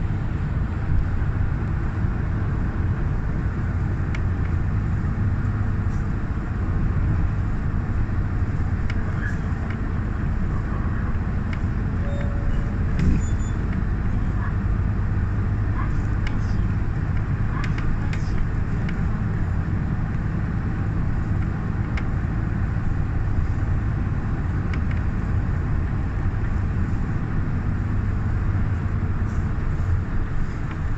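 City bus under way, heard from inside the cabin: a steady low engine and road rumble, with scattered small rattles and clicks.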